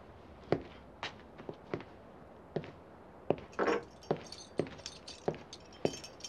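Boot footsteps on a wooden floor, a man walking at a steady pace, about a dozen separate steps.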